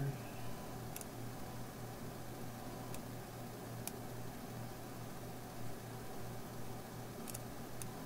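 A few sharp computer mouse clicks, spaced a second or more apart, over a steady low electrical hum.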